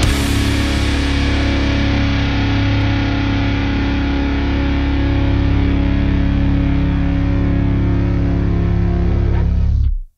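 Heavily distorted electric guitar played through a Mesa Boogie Vertical 2x12 cabinet, recorded by a Lauten LS-208 and LS-308 condenser mic pair on the speaker, holding one chord that rings out steadily and then cuts off abruptly near the end.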